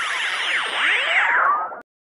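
Electronic synthesizer sound effect: a dense wash of tones sweeping up and down in pitch, with a high whistle falling slowly and a tone rising near the end, then cutting off suddenly.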